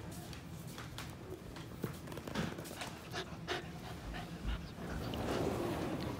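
Black golden retriever mix puppy panting in quick, short breaths, about two or three a second.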